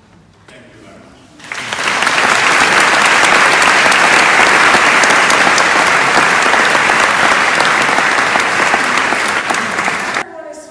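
Audience applauding, starting about a second and a half in as a loud, dense clatter of many hands that holds steady, then cuts off abruptly at the end.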